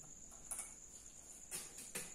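Marker pen writing on a whiteboard: a few short, faint scratching strokes over a steady, faint high-pitched whine.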